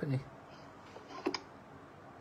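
A pause in a lecture with quiet room tone and one short, sharp click just over a second in.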